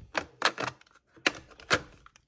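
Plastic makeup compacts clacking against each other and a clear acrylic organizer tray as one is picked out: about five sharp clicks, irregularly spaced.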